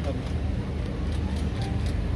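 Steady low rumble of an idling engine, with faint voices of people talking in the background.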